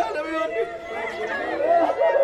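Several people's voices overlapping at once, a group chattering with no single clear speaker.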